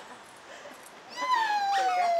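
A puppy whining: one long whine that starts about a second in and slides steadily down in pitch.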